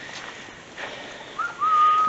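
A short, thin whistle in the second half: a brief rising note, then one held steady note of under a second, over a faint hiss.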